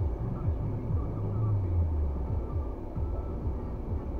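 Low, steady vehicle rumble heard from inside a car's cabin while it waits in traffic, with some low drifting hum.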